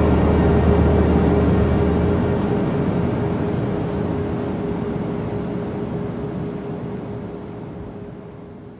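Airliner cabin drone: a steady engine and air hum with a held low tone. The deep bass drops away about two seconds in, and the whole sound slowly fades out.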